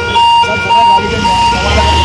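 An electronic warning tone that switches back and forth between a lower and a higher pitch, several changes a second. A low rumble swells near the end.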